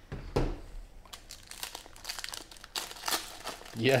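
Foil wrapper of a 2017 Panini XR football card pack crinkling as it is handled and pulled open by hand: a rapid, irregular run of crackles.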